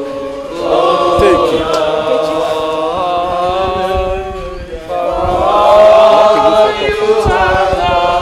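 A group of voices singing a thanksgiving song together, unaccompanied in a chant-like style. They sing two long phrases of held notes, with a short break about four and a half seconds in.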